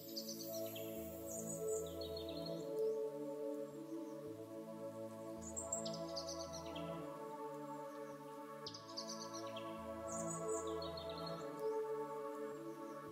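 Soft ambient background music of held, sustained tones with a low pulse returning every four seconds or so, overlaid with bird chirps that recur on the same cycle.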